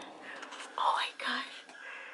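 A person whispering briefly, loudest about a second in, in a small, quiet space.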